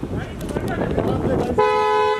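Car horn sounding once, a steady two-tone blast of about half a second near the end, over a crowd of overlapping voices.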